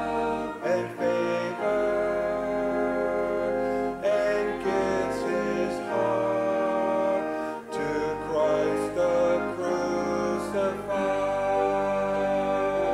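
A hymn sung by a church congregation with keyboard accompaniment, in slow, held notes that change every second or so.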